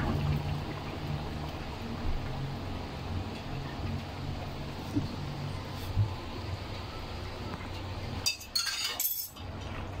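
Tom yam sauce simmering in an aluminium wok on the stove: a steady bubbling hiss with a few soft pops, and a short clinking clatter near the end.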